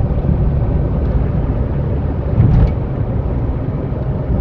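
Car driving at about 60 km/h, heard from inside the cabin: a steady low rumble of engine and tyre noise, with a brief thump about two and a half seconds in.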